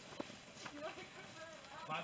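Faint voices of people talking a short way off, mixed with walking footsteps on grass and a single short click just after the start.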